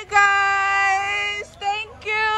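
Background music with a high singing voice holding long sustained notes: one held for over a second, a brief note, then another long note.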